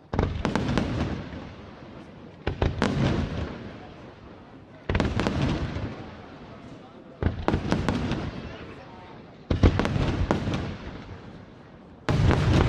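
Aerial firework shells bursting five times at an even pace, about every two and a half seconds, each sharp report trailed by a spray of crackling that dies away.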